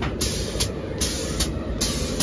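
Loud rumbling sound effects of a ghost-house attraction, a dense roar with a regular beat of about two and a half sharp pulses a second.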